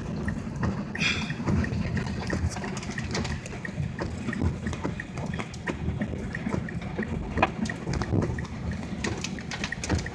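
A car creeping through floodwater, heard from inside the cabin: a steady low rumble with many small splashes of water against the car.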